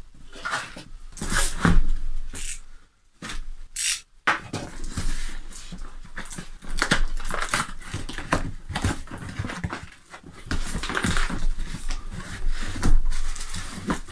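A cardboard box being opened and rummaged by hand: irregular rustling, scraping and flapping of cardboard flaps and paper as the instruction leaflet and packing are pulled out.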